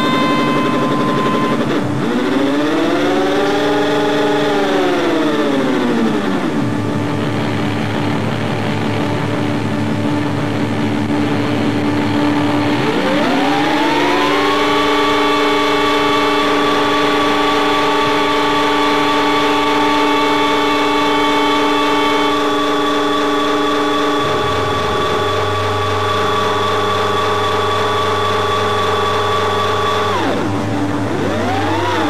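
Live rock band's distorted electric guitar noise with no beat: long sustained tones that slide up in pitch and back down a few seconds in, rise again about thirteen seconds in and then hold, over a low drone that shifts near the end.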